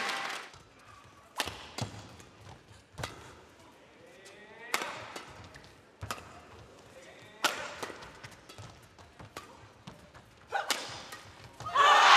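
Badminton rally: a run of sharp racket strikes on a shuttlecock, irregularly spaced about a second apart, over a hushed arena.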